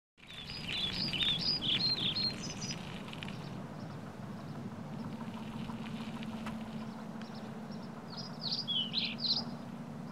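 Birds chirping and singing in two spells, one through the first few seconds and another near the end, over a steady low hum of outdoor background noise.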